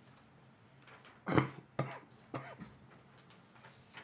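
A person coughing three times in quick succession, about a second in, the first cough the loudest.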